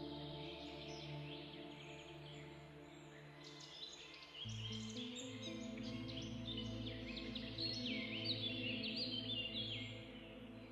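Soft ambient background music of sustained chords, the chord changing about four and a half seconds in, with many birds chirping over it.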